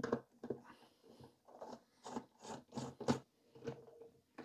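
Phillips screwdriver turning screws out of a desktop computer's sheet-metal drive bracket: a series of short scraping clicks, several a second at times.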